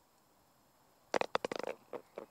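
Golf ball dropping into the hole's cup, about a second in, with a quick rattle of knocks against the cup liner as it settles.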